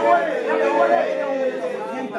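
A group of children and teenagers praying aloud all at once, many voices overlapping and calling out together without a break.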